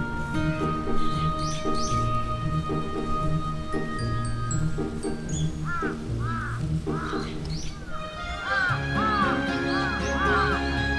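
Background music with held tones over a steady repeating low beat. About two-thirds of the way in, groups of short rising-and-falling chirps, two to three a second, sound over it.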